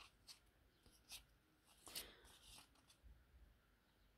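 Faint rustling and soft ticks of small cardboard cards being handled and turned over one at a time, a handful of brief flicks, the clearest about two seconds in.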